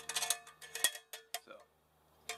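Light metal clinks with a brief ring as a wire stove stand shifts inside a metal camp kettle, several in quick succession and one more a little later.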